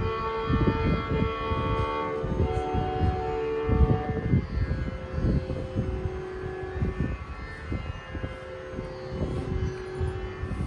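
Carnatic concert music: a violin holding long notes, with mridangam strokes underneath.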